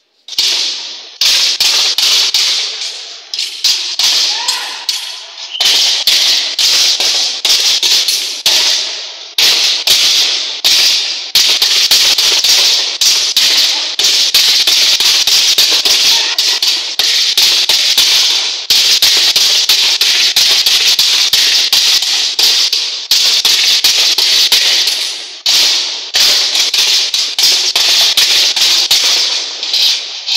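Steel sword and round metal shields clashing in a sword-and-shield sparring bout. The strikes are rapid and irregular, several a second, each with a short metallic ring, and they keep up with only brief pauses from about half a second in.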